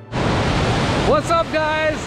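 Loud, steady rush of a waterfall pouring down stepped rock ledges, starting suddenly. A man's voice comes in over it about a second in.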